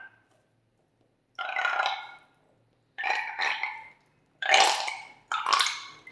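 Four loud burp-like gurgles, each under a second, as slime is squeezed out through the neck of a rubber balloon.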